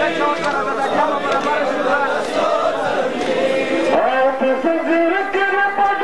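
Men chanting a mourning lament (nauha) in chorus, several voices overlapping, until about four seconds in a single male voice takes the lead with long held notes.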